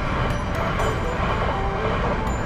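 A South Western Railway passenger train passing close by at a level crossing: a loud, dense rumble and clatter of wheels on rails, heard from inside a waiting car, mixed with background music.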